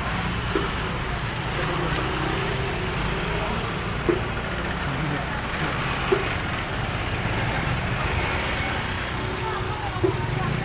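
Motor scooters riding slowly past close by, their small engines running steadily, under indistinct chatter from a crowd of people. Two short knocks stand out, about four and six seconds in.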